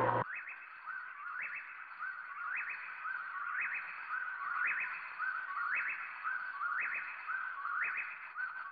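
A whistled call repeated about once a second, each ending in a quick upward sweep.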